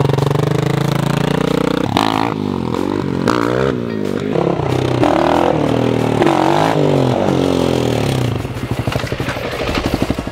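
Dirt bike engine running steadily, then revved up and down over and over from about two seconds in, its pitch rising and falling with each throttle blip and gear change as the bike rides, dying away near the end.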